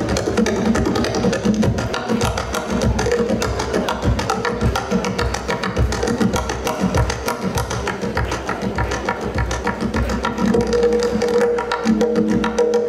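Tonbak, the Persian goblet drum, played solo with the fingers: a fast, dense run of sharp finger strokes and rolls over the drum's ringing low tones.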